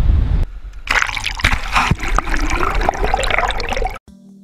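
Water splashing and gurgling, full of small sharp splashes, starting about a second in and cutting off abruptly at the end. Before it there is a brief rumble of wind on the microphone.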